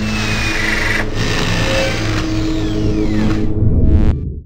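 Logo-intro sound design: a steady, engine-like mechanical drone with a few high falling sweeps, swelling louder near the end.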